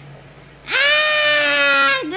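A voice run through a voice-changer effect, giving a long, loud, high-pitched cry or wail. It starts after a short quiet, about two-thirds of a second in, and is held on one pitch that sags slightly.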